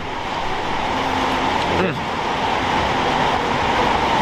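A steady rushing noise with no rhythm, fairly loud throughout, under a man's brief 'okay'.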